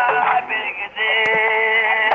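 A song: a singing voice over musical accompaniment, ending in a long held note over the last second.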